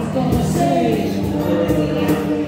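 Live acoustic music: a strummed acoustic guitar and singing over a steady cajon beat.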